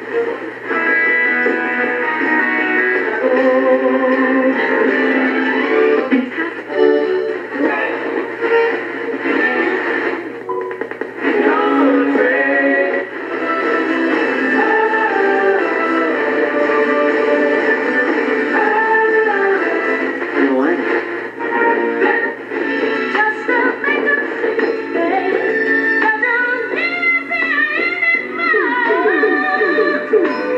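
Music with singing playing from a vintage Panasonic flip-clock radio's small speaker, thin and without deep bass.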